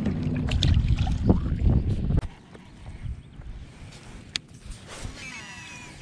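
A released bass splashing into the water beside a kayak, over a heavy low rumble of wind on the microphone. About two seconds in this cuts off abruptly to a quieter open-air background, with one sharp click later on.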